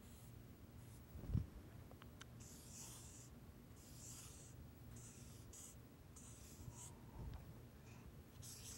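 Marker pen writing on a paper flip-chart pad, faint, in a series of short scratchy strokes. A soft low thump comes about a second in and another near the end.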